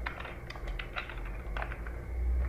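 Computer keyboard being typed on: an irregular run of quick key clicks, with a short pause around the middle, over a steady low hum.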